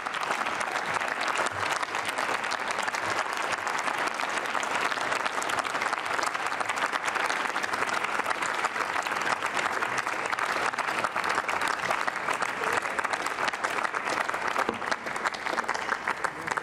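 Sustained applause from a chamber full of parliamentarians, many hands clapping steadily, thinning out a little near the end.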